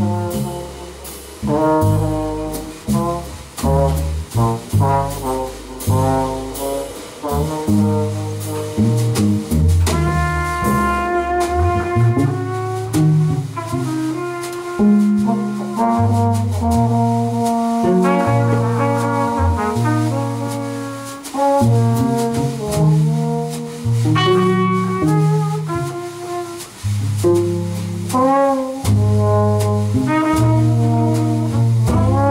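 Live jazz quartet playing: trumpet and trombone carry the melody lines over electric bass and drums. The drums and cymbals are busy for the first few seconds, then thin out under long held horn notes.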